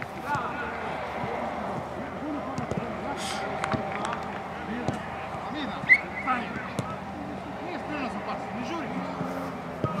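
Men's voices shouting and talking across a football pitch, with a few sharp knocks of footballs being kicked; the loudest knock comes about six seconds in.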